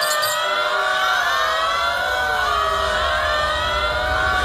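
Several overlapping siren-like tones wavering slowly up and down in pitch over a low steady rumble, with no beat or vocals.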